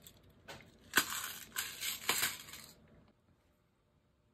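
Small metal mini brads rattling and clinking inside a clear plastic box as it is handled, with a few sharp clicks among the jingling; the sound stops abruptly about three seconds in.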